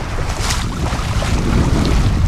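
Wind buffeting the microphone over the sound of choppy open sea washing around a small sailing yacht, with a brief louder rush about half a second in.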